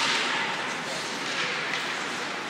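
Ice hockey faceoff: a sharp crack of sticks striking the puck and ice at the start, then a fading wash of skate blades and sticks scraping the ice.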